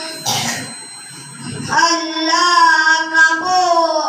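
A boy singing a naat (an Urdu devotional poem in praise of the Prophet) unaccompanied into a microphone, holding long steady notes. About half a second in he breaks off for a breath, and he takes up the melody again near the two-second mark.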